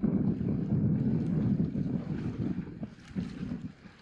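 Wind buffeting the microphone in a low, rumbling gust that eases off about three seconds in.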